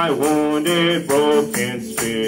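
Worship song sung into a church microphone, with long held notes sliding between pitches, over a hand-percussion rattle keeping a steady beat.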